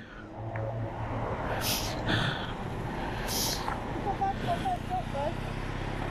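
Steady low hum of a motor vehicle engine running nearby on the street, with two short hissing bursts about two and three and a half seconds in and a faint distant voice near the end.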